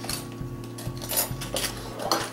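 A metal measuring spoon scooping salt from a small ceramic bowl, with a few light clinks and scrapes against the bowl.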